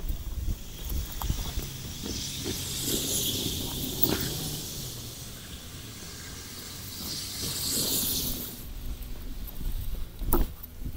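A hissing rustle that swells twice, from about two to four seconds in and again from about seven to eight and a half seconds in, over a low steady rumble with a few soft knocks.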